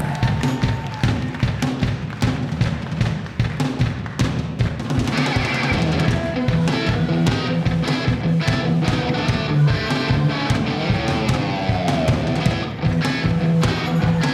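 Live rock band starting a song: electric bass line over drum kit, with the band filling out with guitar and more instruments about five seconds in.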